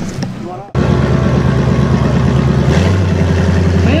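A short bit of speech, then after a cut a flat-fender Jeep's engine running steadily at low revs. A deeper tone joins in a little before three seconds in.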